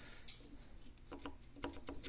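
Faint light clicks as a bolt is turned by hand in the centre of an A/C compressor clutch disc, jacking the disc off the compressor shaft: a few clicks about a second in and a few more near the end.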